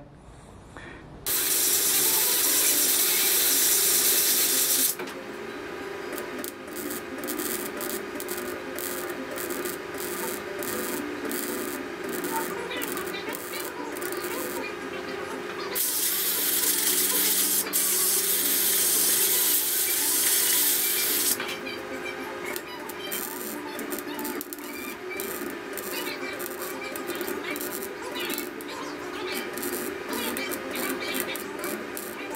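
Arc welding crackling in short stretches along a Chevy C10's steel A-pillar seam. Two long blasts of compressed air, about a second in and again near the middle, cool the panel between the welds.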